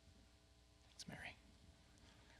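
Near silence: room tone, with one brief faint whisper about a second in.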